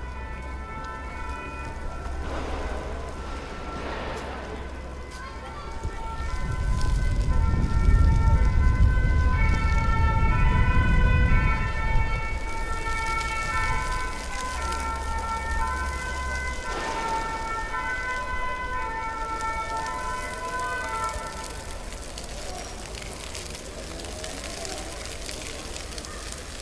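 Emergency-vehicle siren sounding repeatedly, its tones switching back and forth in pitch. A loud low rumble comes in about six seconds in and lasts about six seconds.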